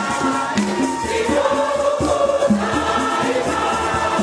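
Choir and congregation singing a hymn in Shona, with rattles shaken and a repeating low beat underneath.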